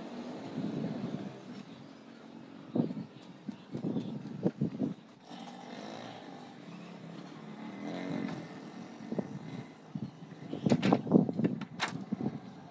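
Wooden ladder knocking and clattering as it is handled and moved about on dirt ground: a few separate knocks in the middle and a louder burst of knocks near the end.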